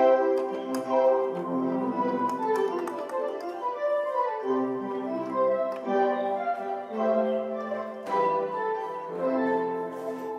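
A run of sustained chords played on a MIDI keyboard through Google Magenta's neural synthesizer (NSynth), its voice set between violin and organ so that the tone is a new blend of the two instruments. The chords change about once a second.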